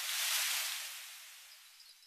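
Edited-in transition sound effect: a hissy whoosh that swells to a peak about half a second in and then fades away, with faint glassy tinkling near the end.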